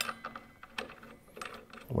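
A few light, scattered metallic clicks and taps as a steel washer and spindle hardware are fitted by hand at the blade arbor of a cordless cut-off saw.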